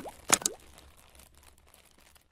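Two short pop sound effects of a logo intro animation, about a third of a second apart, each sliding quickly up in pitch, then dying away to near quiet.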